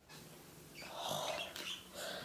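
Faint sniffing: a soft breathy inhale through the nose, about a second in, as a small hand-sanitizer bottle is smelled.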